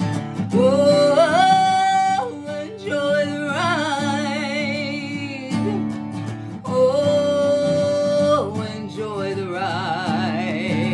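A woman singing three long held notes with vibrato over a strummed acoustic guitar; the first climbs in steps, and the last is held and then falls away near the end.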